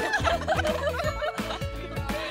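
Several young women laughing and shrieking together, with a pop backing track and a steady beat underneath.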